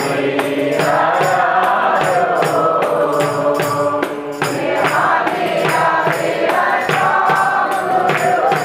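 Devotional chanting: held, slowly gliding sung lines in a group of voices over a steady percussion beat.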